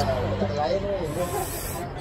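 Indistinct voices talking in the background over a steady low hum, with a short hiss a little past the middle.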